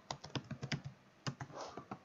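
Typing on a computer keyboard: an uneven run of keystroke clicks with a brief pause about a second in.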